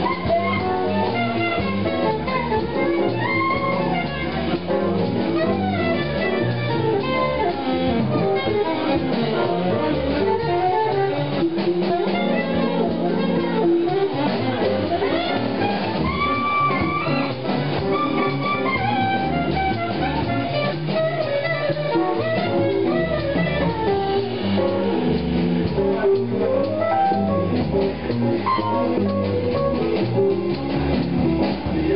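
A live jazz quartet of keyboard, upright double bass and drum kit, with saxophone, playing a Latin-tinged jazz tune with busy, running melodic lines over a steady groove.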